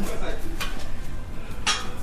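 Light clinks and knocks over a steady low hum, with one short, sharp rasp near the end.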